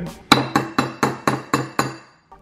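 A metal spoon tapping against a ceramic bowl: about eight quick clinks at roughly four a second, each ringing briefly.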